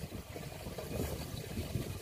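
Water poured in a thin, steady stream from a metal pot into the narrow neck of a plastic water jug, a faint even trickle.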